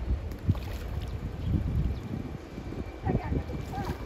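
Low, rumbling wind and water noise with a few soft knocks. Muffled, oddly pitched voices of passers-by, distorted by slow-motion playback, come in about three seconds in.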